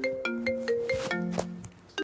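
Mobile phone ringtone signalling an incoming call: a short melody of clear, held notes, which stops about a second and a half in.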